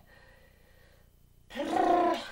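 A dry-erase marker writing on a whiteboard, faint, then about a second and a half in a loud, drawn-out hesitant 'um' from a woman's voice.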